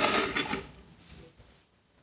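Chopped rotten fruit pieces tipped by hand into a bucket of rice-washing water: a brief rustling, clicking splash in the first half second that quickly dies away.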